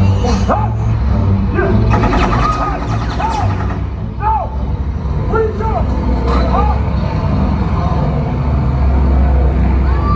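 The deep, steady engine rumble of the stunt show's propeller plane, under short shouted voices and music.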